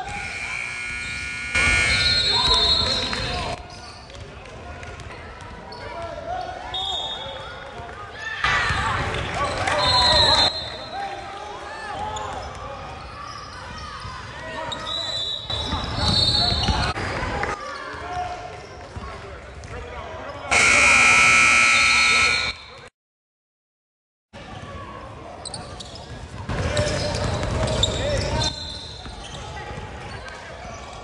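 Youth basketball game in a gym: a ball dribbling, sneakers squeaking and spectators calling out, swelling into shouts and cheers four times. The loudest event is a scoreboard buzzer, a steady blaring tone held for about two seconds near the end, followed by a brief total silence.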